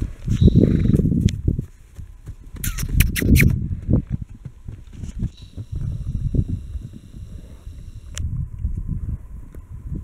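Hoofbeats of several horses galloping and cantering over dry, hard pasture ground, an irregular drumming that is loudest in the first second and a half and again around three seconds in.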